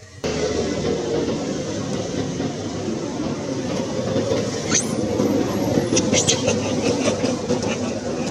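A loud, steady, rumbling background noise that starts abruptly. About five seconds in, a thin high-pitched squeal rises and holds for about a second, followed by a run of short high chirps.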